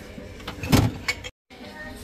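Items being handled in a plastic storage tote, with one loud knock about three-quarters of a second in. The sound drops out completely for a moment just after, at an edit.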